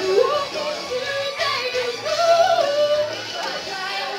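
A woman singing karaoke into a microphone over a backing track with a steady beat, holding long notes that slide between pitches.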